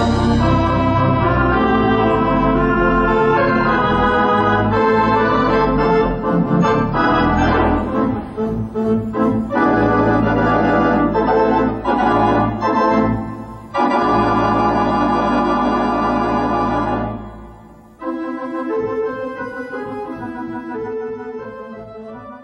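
Organ playing silent-film accompaniment: full, sustained chords over a deep pedal bass. About 17 seconds in it breaks off, then goes on more softly and fades near the end.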